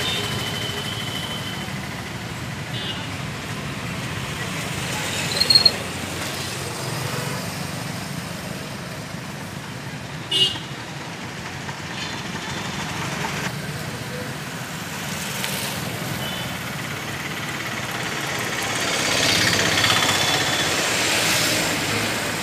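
Steady road-traffic noise from a nearby street, with a brief high-pitched sound about five seconds in and a single sharp knock about ten seconds in.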